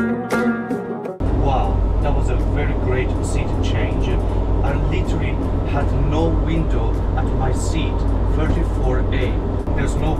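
Background music ends about a second in, giving way to the steady low drone of a Boeing 747-422 airliner's cabin in cruise flight, heard inside the aircraft, with a man talking over it.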